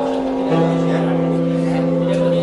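Live jazz: a horn section of trombone and alto and tenor saxophones holding sustained chord notes, moving to a new chord about half a second in, with double bass and drums underneath.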